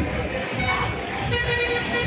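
A vehicle horn honking over crowd chatter, with one steady blast held for most of a second near the end.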